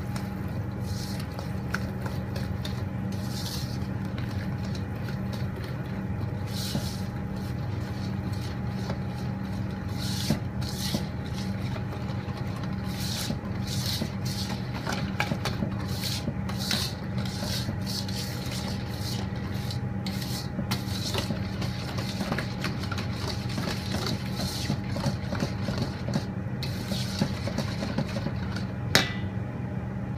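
Wire whisk stirring a thick chocolate mixture in a stainless steel bowl, making irregular scraping and clinking strokes against the metal over a steady low hum.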